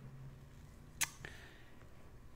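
A single sharp click about a second in, short and dry, heard in a quiet pause over a faint low hum.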